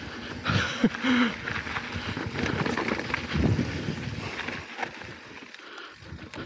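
Mountain bike rolling down a dirt and rock trail: tyre and gravel noise mixed with wind on the small action-camera microphone. It grows quieter near the end.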